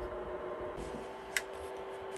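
Creality Ender 3 V3 SE 3D printer's fans running with a faint steady hum while the print head warms up, with a single sharp click about a second and a half in.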